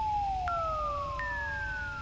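Electronic comic sound effect: three clean whistle-like tones, each starting suddenly and sliding slowly down in pitch, the second and third entering higher and overlapping the ones before. A low steady hum runs underneath.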